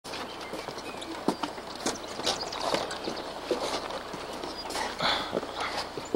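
Footsteps on the deck of a suspension footbridge: irregular short knocks about every half second over a steady background hiss.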